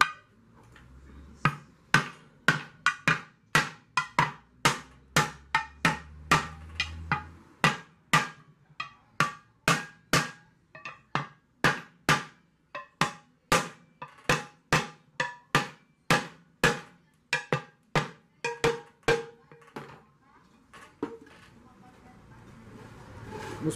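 Repeated hammer blows on the bent bottom of a 10-litre aluminium pressure cooker, about two to three ringing metallic strikes a second with a short pause near the end. The pot's warped bottom is being beaten straight.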